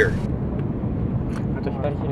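Steady low rumble of an Airbus A330-300 cabin on final approach, the engines and airflow heard from inside the cabin. The last of a synthetic 'wind shear' cockpit warning callout cuts off just after the start.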